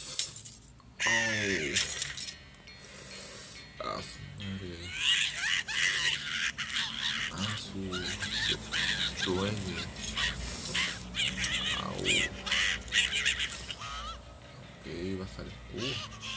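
Cartoon soundtrack: a glass light bulb shatters at the start, then a cartoon beaver cries out in pain with long, wavering wails and whimpers over background music.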